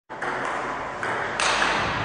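Table tennis ball being struck and bouncing, with sudden sharp hits at about one second and again a little later, over a steady hiss.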